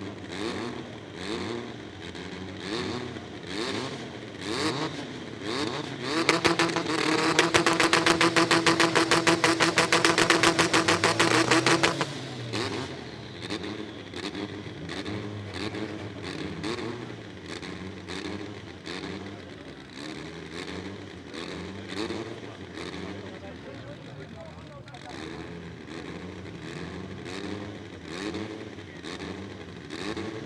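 Honda drag-car engines revving at the start line, the revs rising and falling about once a second. From about six seconds in, one engine is held at high, steady revs for about six seconds, much louder, then drops back.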